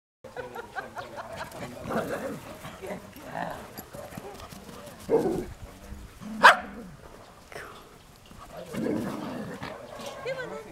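Dogs barking at play, in short separate barks; the loudest is one sharp bark about six and a half seconds in.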